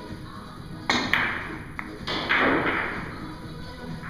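A Russian billiards shot: a sharp clack of the cue ball being struck about a second in, quickly followed by a second clack of balls colliding, a small knock, then a louder rattle lasting under a second as the balls carry on across the table.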